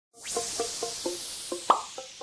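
Logo intro sting: a string of short, pitched plops, about four a second, over a bright swoosh that sets in at once and slowly fades. One louder pop comes near the end.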